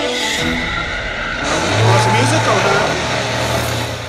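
Action-film trailer audio: a dense, loud sound-effects mix, with a low steady drone coming in about one and a half seconds in and sliding, gliding sounds over it.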